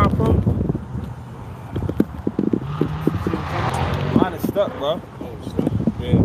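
Phone being handled right against its microphone while being set up: repeated rubbing and knocking handling noise, with short bits of voices.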